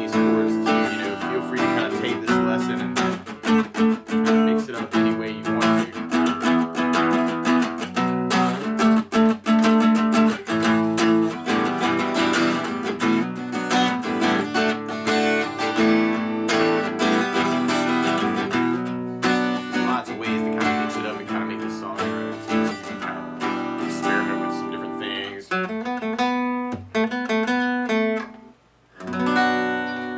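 Acoustic guitar strumming chords steadily, with a short break about a second and a half before the end, then strumming again.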